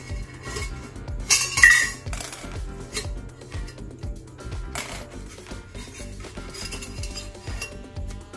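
Small metal wire springs being pulled out of the mouth of a powder-coated tumbler and set down on the workbench, clinking several times, with the loudest clatter about one and a half seconds in.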